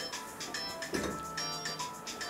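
Background music: sustained notes in chords that change every half second or so.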